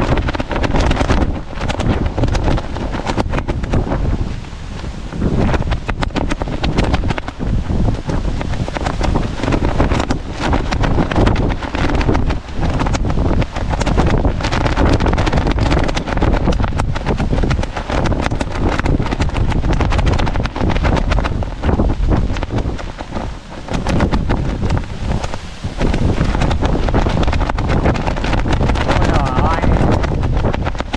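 Strong gusty storm wind buffeting the microphone, a loud low rumble that rises and falls with each gust.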